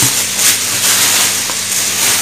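Plastic bag and clear plastic food containers crinkling and rustling as they are handled and opened.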